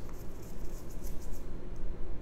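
Small handling sounds of a held object, light taps and rustles, mostly in the first second, over a low steady hum.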